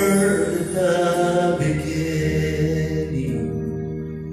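Worship music: long held chords with a voice singing over them, gradually growing quieter toward the end.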